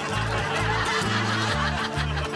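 Laugh track of an audience laughing, over light background music with a steady bass line.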